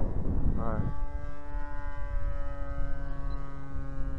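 Steady, even-pitched drone of the Ryan STA scale model airplane's engine in flight, coming through clearly about a second in, with wind rumbling on the microphone.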